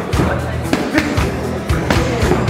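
Background music with a steady low beat, under repeated sharp smacks of boxing gloves and a kicking shin striking held pads, several hits over two seconds.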